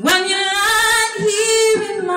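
A woman singing one long held note into a microphone, starting abruptly and wavering slightly in pitch in the second half.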